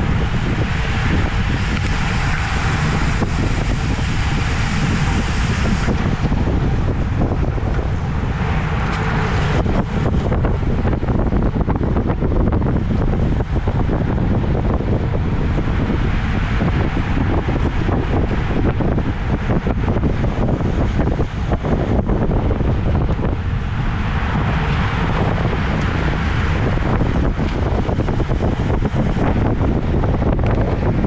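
Wind rushing over an action camera's microphone on a bicycle riding at about 25 mph, with a deep, steady rumble of road and tyre noise underneath. The hiss is strong at first, eases about ten seconds in, and swells again near the end.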